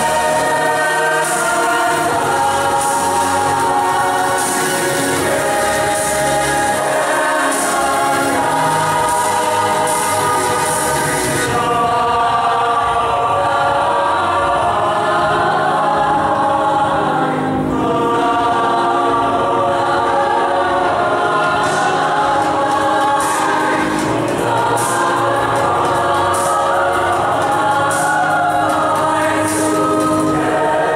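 Large youth choir singing in full chords, many voices holding long notes together at a steady, loud level.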